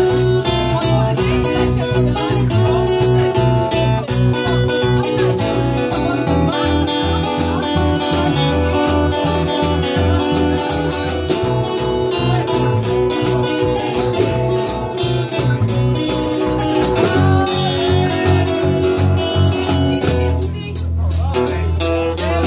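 Live blues band playing an instrumental passage: acoustic guitar strummed and riffed over bass guitar and drums, with a steady rhythm.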